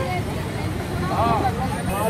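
Several people's voices talking over a steady low rumble of street traffic, with one voice rising clearly a little past the middle.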